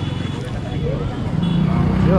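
A car engine running close by amid the chatter of people on a busy street, its hum growing louder toward the end.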